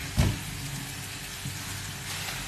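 Kitchen tap running into a stainless-steel sink: a steady rush of water over a low hum, with one short knock about a quarter of a second in.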